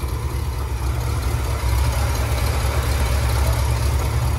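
Ford 390 V8 in a 1974 F250 idling steadily, heard with the hood open.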